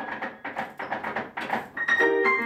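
A short break in grand-piano music played four hands: the piano stops and leaves a string of faint, irregular soft knocks and rustles. The playing comes back just before the end.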